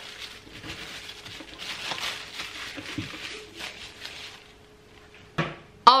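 Plastic cling wrap crinkling and rustling as it is folded around a disc of pastry dough, dying away about four and a half seconds in, with a faint steady hum underneath.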